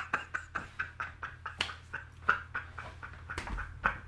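Breathy, wheezing laughter: a run of short panting exhalations, several a second, trailing off after a loud laugh.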